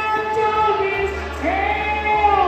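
Karaoke singing over a backing track: a long held sung note, then a new note sliding up into another held note about one and a half seconds in.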